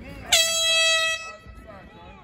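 A single air horn blast: one steady, loud, pitched tone that starts abruptly about a third of a second in and cuts off after about a second, over scattered voices.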